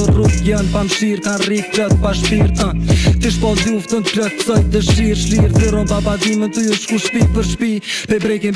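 Albanian-language rap freestyle played back: a male voice rapping over a hip-hop beat with regular drum hits and deep bass notes that slide downward.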